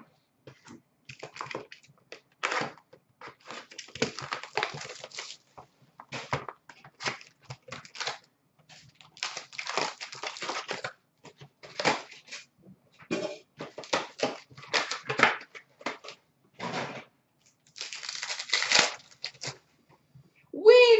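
Trading-card packaging being torn open and handled: repeated short crinkling, tearing and rustling of wrappers and cardboard as cards are pulled and shuffled.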